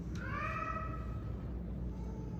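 A single high-pitched vocal call that slides up at its start and is held for about a second and a half, over a steady low room hum.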